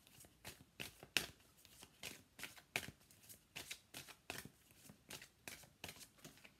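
A Romance Angels oracle card deck being shuffled by hand: a run of soft, quick card slaps, about two or three a second at an uneven pace.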